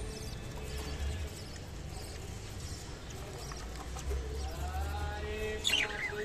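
Budgerigars warbling softly, with scattered small clicks, then a few sharp chirps near the end. A steady low hum runs underneath.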